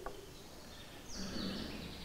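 Faint, steady room background noise picked up through a handheld microphone during a pause in speech, with a slight click just after the start.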